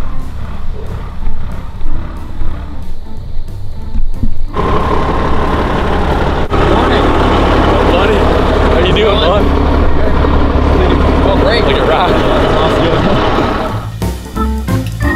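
Music with a pulsing beat. About four and a half seconds in, a louder, steady low rumble joins it: a work truck's diesel engine idling.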